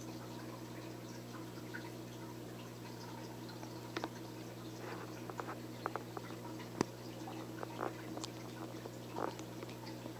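Faint, steady low electric hum of running aquarium equipment, with a few small scattered clicks and ticks in the second half.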